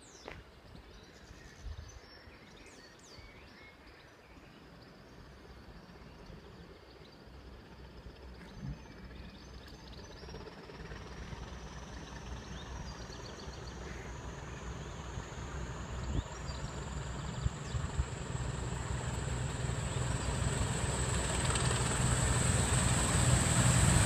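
Class 20 English Electric diesel locomotives approaching, their engine rumble growing steadily louder. From about halfway through, a high whistle joins in and slowly rises in pitch as they near.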